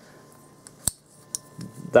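Steel slip-joint pliers handled and turned over, giving one sharp metallic click just under a second in and a couple of lighter ticks around it.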